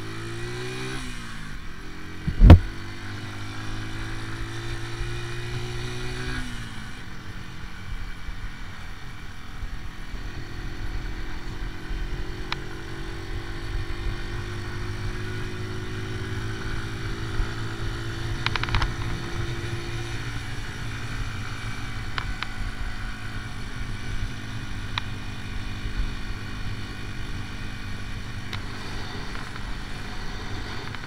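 AJS Tempest Scrambler 125's single-cylinder four-stroke engine under way: the revs climb, drop with a gear change about a second in, climb again and fall back at around six seconds, then hold a steadier, slowly rising note before easing off about twenty seconds in. A single sharp knock about two and a half seconds in is the loudest sound.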